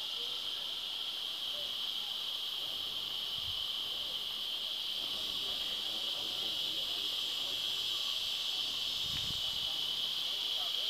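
Steady, high-pitched buzzing chorus of insects, growing a little louder in the second half.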